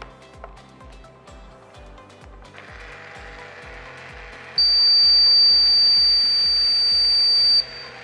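The model car's obstacle-warning buzzer sounding one loud, steady high-pitched tone for about three seconds, starting near the middle, the alarm that alerts the driver that an obstacle has been detected. It sounds over a steady noise that begins about two and a half seconds in, with background music with a steady beat underneath.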